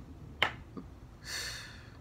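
A single sharp click about half a second in, then a short breathy hiss about a second later.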